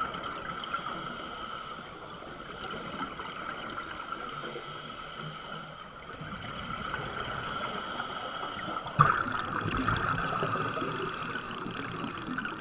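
Muffled underwater sound of scuba divers breathing through regulators, their exhaled bubbles gurgling over a steady hum. A louder burst of bubbling starts suddenly about nine seconds in.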